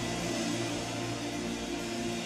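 Soft background music of sustained chords, the notes held steadily, over a faint hiss.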